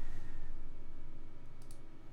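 Computer keyboard clicks: a quick pair of key clicks near the end, consistent with a typed web search being entered, over a steady low room hum.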